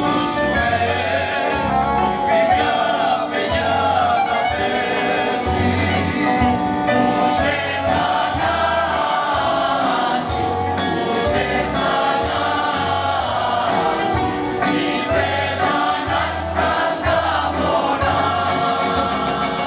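Mixed choir of men's and women's voices singing a song in harmony, accompanied by accordion, with a bass line and a steady beat.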